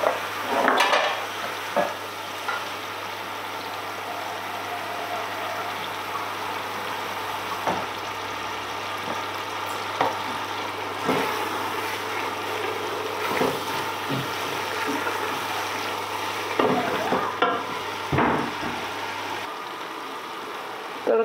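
Onion-tomato masala sizzling steadily in a large aluminium pot on a gas flame turned up to full, with a wooden spoon knocking against the pot several times as it is stirred.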